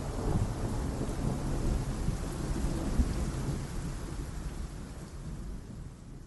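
Rain and rolling thunder sound effect at the close of a song, fading out steadily.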